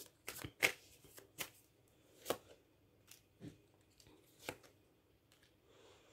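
Tarot cards being handled, drawn from the deck and laid on a wooden table: about half a dozen short, sharp card snaps and flicks, spaced irregularly, with quiet between them.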